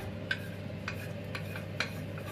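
A spatula stirring freshly added diced onions and peppers in a frying pan, with a few light knocks against the pan, over a steady low hum.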